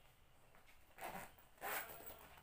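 Zip on a small fabric shoulder bag being pulled, two short zip strokes about a second in and again just after.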